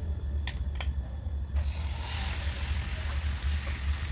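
Beaten egg with chopped vegetables poured into hot oil in a nonstick pan starts sizzling about a second and a half in and keeps sizzling. Under it runs a steady low hum, and two light clicks come just before the sizzle.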